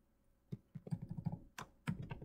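Computer keyboard being typed on: a quick run of keystrokes starting about half a second in.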